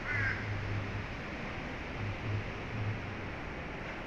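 A single short bird call right at the start, over a steady background noise that runs on without change.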